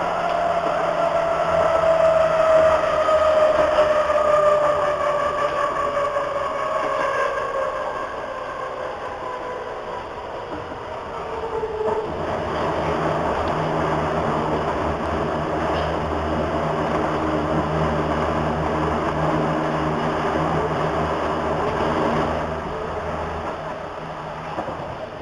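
Hamburg U-Bahn DT3-E train heard from just behind the driver's cab. A motor whine falls steadily in pitch over the first dozen seconds, then gives way to a steady rumble and hum of the train running on the rails, which eases off near the end.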